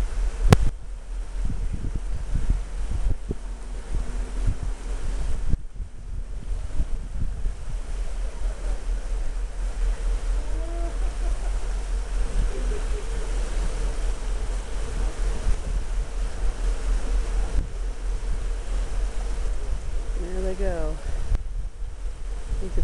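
Wind blowing over the microphone high above the open sea, a steady low rumble and rushing. There is a sharp knock about half a second in, and faint voices are heard about ten seconds in and again near the end.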